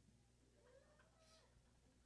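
Near silence: hall room tone with a low hum, and a faint, brief high-pitched wavering sound around the middle.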